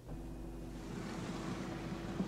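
Steady background ambience from a film soundtrack: an even hiss with a faint held hum. It comes in abruptly.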